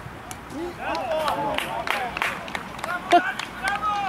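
Several men shouting and cheering outdoors just after a goal is scored, voices overlapping for a second or two.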